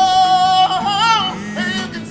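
A man singing a high note held for about a second, then wavering up and down, to his own strummed acoustic guitar.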